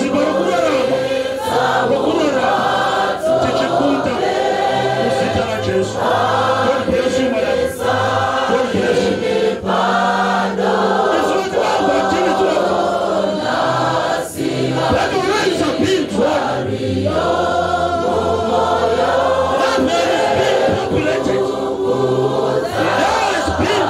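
Many voices singing together like a choir, in sung phrases held a second or two each, over steady low bass notes.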